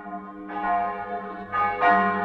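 Bells struck several times, each stroke ringing on under the next and growing louder; they lead into music.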